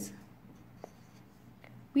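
Felt-tip marker writing on paper: faint, soft scratching with a light tap a little under a second in.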